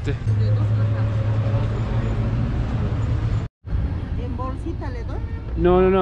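A road vehicle's engine idling close by, a steady low hum over street noise. The sound drops out abruptly for a moment about halfway through, then street noise returns with voices near the end.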